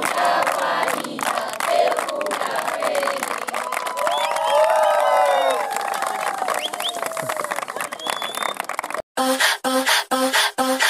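A crowd clapping and cheering, with rising and falling shouts from several voices around the middle. About nine seconds in it cuts off and gives way to electronic music with a steady beat.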